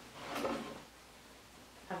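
A brief rustle of fabric and packing paper as a cloth bag is lifted out of a box, lasting about half a second near the start.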